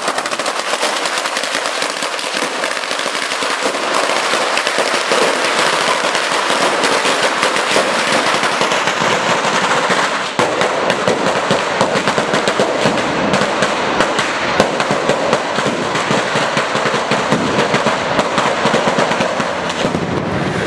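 A long string of firecrackers laid along the kerb going off in a rapid, continuous crackle of bangs. About halfway through there is a brief dip, and after it the bangs come more separately.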